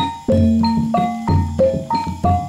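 Kuda kepang ensemble music: tuned gongs and metallophones struck in a steady repeating pattern, about three notes a second, each ringing on over a deep sustained gong hum.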